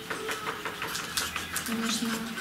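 Spoons and sticks clicking and scraping against small plastic bowls as seeds and gelatin are stirred, a string of small irregular taps, with quiet voices murmuring underneath.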